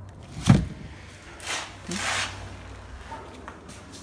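A single sharp thump about half a second in, followed by two brief rustles.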